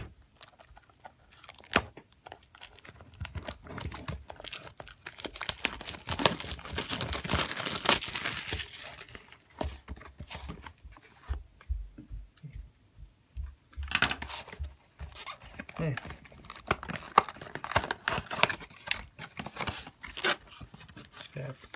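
Packaging of a Pokémon booster box being torn and crinkled as the box is unwrapped and opened. It comes in crackling spells, loudest from about six to nine seconds in and again over the last six seconds, with a few dull knocks of the cardboard box between.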